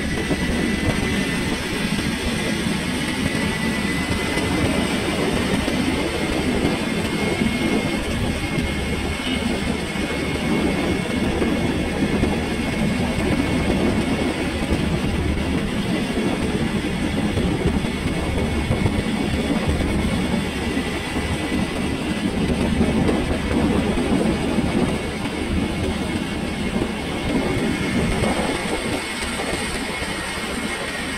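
Steady rumble and road noise of a moving vehicle at a constant pace, with a faint high whine running through it.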